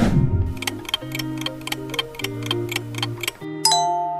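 Quiz countdown-timer sound effect: quick, evenly spaced clock ticks over background music. Near the end the ticking stops and a bright chime rings out, marking the correct-answer reveal.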